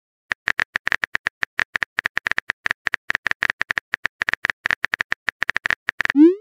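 Typing sound effect of an on-screen phone keyboard: a quick, irregular run of short identical clicks, about nine a second, as a message is typed out letter by letter.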